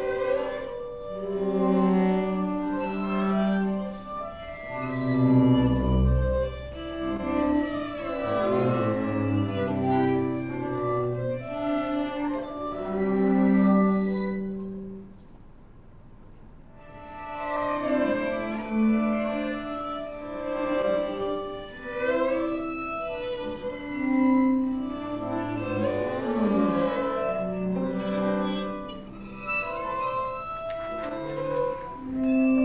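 String orchestra of violins, violas, cellos and double basses playing held notes, with the second violins muted, which gives them a very pale colour. The playing drops to a quiet pause about halfway through, then resumes.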